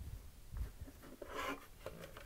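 Faint handling noise from hands working fabric flowers onto a fabric-covered clock: a soft thump about half a second in, then a scratchy rub of cloth around the middle and a few small clicks as the clock is shifted.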